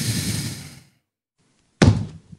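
Cartoon sound effects: a breathy rush like a sharp sigh or gasp that fades out within a second, then a sharp knock near the end.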